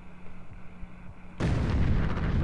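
Explosion sound effect in a music video's closing title sequence: after a quiet start, a sudden loud, deep blast about one and a half seconds in that keeps going.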